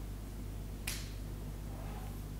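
A single short, sharp click just under a second in, over a steady low hum of room noise.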